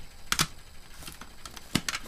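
Plastic CD jewel cases clacking against each other as they are handled, a few sharp clicks with two louder clacks, one about a third of a second in and one near the end.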